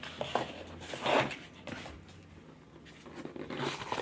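Small cardboard jewelry boxes and tissue paper being handled: short rustles, the strongest about a second in, then a few light taps of box lids near the end.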